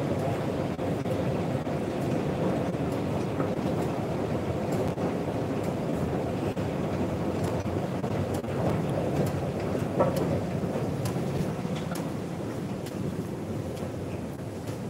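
Steady low rumble of metro station ambience: a moving escalator's machinery and the station's air handling. A single sharp click comes about ten seconds in, and the noise eases slightly near the end.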